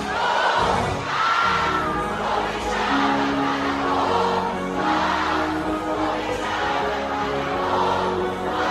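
Live concert music played loud over a PA system, with a crowd of students singing along.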